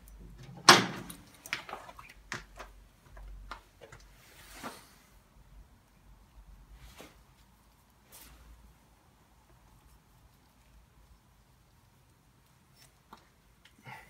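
Hands working a rubber fuel line onto its fitting at a small engine's carburetor: scattered clicks and knocks of parts and tools being handled. The loudest knock comes about a second in, with fainter ticks and a rustle over the next few seconds, then it goes mostly quiet.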